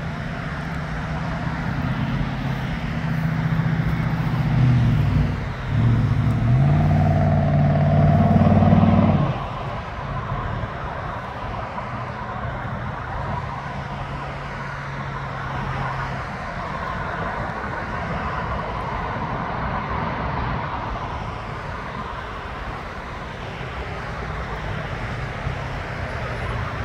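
Road traffic: a motor vehicle's engine runs close by, loudest from about four to nine seconds in and then cutting off sharply. A steady hiss of road noise continues throughout.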